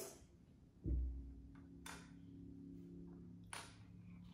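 Small handling sounds of bamboo stick pieces being laid out on a wooden table: a dull thump about a second in, then a couple of light clicks, over a faint low hum.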